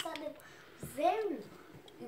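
A short word or call in a high voice about a second in, its pitch rising and then falling, after a brief bit of speech at the very start.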